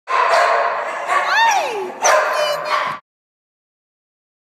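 Dogs barking and yipping in a shelter kennel, with one long whine that falls in pitch about a second and a half in. The sound cuts off suddenly near the end.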